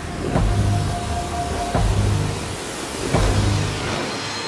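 Electronic dance music from a DJ set: a deep, heavy bass hit about every second and a half, with a steady higher tone over it for the first couple of seconds.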